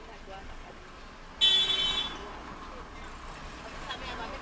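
A car horn toots once, briefly, about a second and a half in, over the low steady sound of town street traffic with the car at a standstill.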